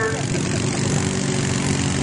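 ATV engine running hard at a steady pitch as the quad churns through a deep mud pit.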